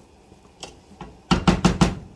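Wooden spoon knocking against the pot while stirring shredded cheese into macaroni: a couple of faint clicks, then a quick run of about five knocks over half a second, starting about a second and a half in.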